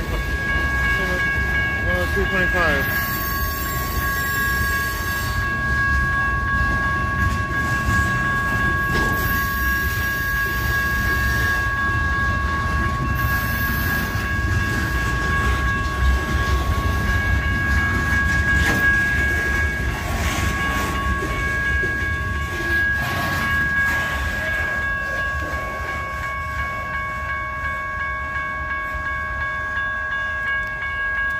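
Freight cars of covered hoppers and lumber-loaded flatcars rolling past at a grade crossing, a steady low rumble of wheels on rail. Over it, the crossing's warning bell rings on in a steady two-pitched tone, with a few short spells of high hiss in the first half.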